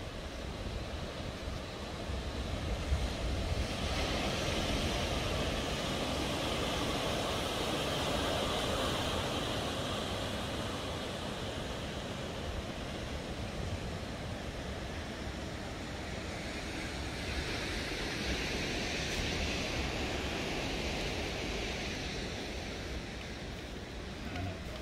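Rough surf breaking against volcanic rocks, a steady rush of churning foam that swells twice, about four seconds in and again later.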